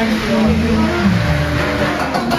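A motor vehicle's engine running close by, coming in about half a second in, its pitch falling around the middle.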